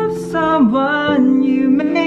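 Music: a solo voice singing a melody over sustained accompanying chords.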